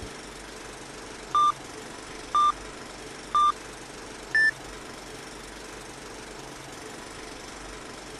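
Film-leader countdown sound effect: three short beeps a second apart, then a fourth, higher-pitched beep a second later, over a steady hiss.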